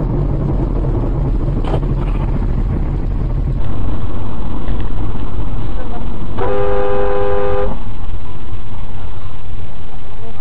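Steady low road and engine rumble picked up by an in-car dashcam, which jumps louder about three and a half seconds in. A car horn sounds once, a steady blare lasting over a second, a little past the middle.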